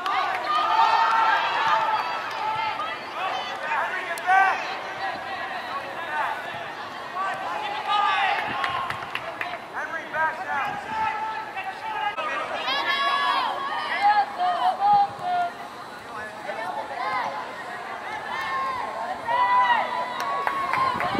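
Voices calling and shouting across a soccer field: players calling to one another and onlookers calling out, many short overlapping shouts with no clear words, loudest in a cluster of calls a little past the middle.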